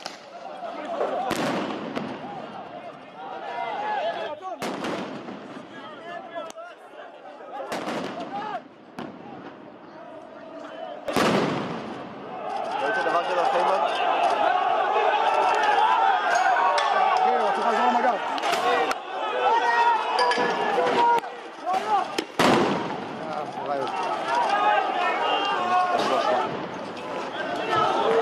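Stun grenades going off: several sharp bangs a few seconds apart, each with a short echo, among a crowd shouting. The crowd noise swells about halfway through and stays loud.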